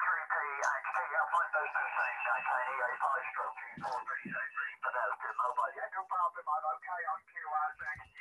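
A man's voice on single-sideband amateur radio, received from the other station and coming out of the transceiver's speaker. It talks without a break and sounds thin and narrow.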